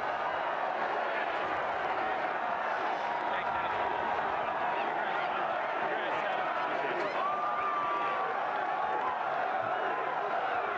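A large golf gallery cheering and shouting, a steady dense wash of many voices with some clapping, and one long held shout about seven seconds in.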